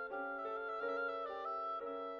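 Oboe playing a moving classical melody, its notes changing every fraction of a second, over piano accompaniment.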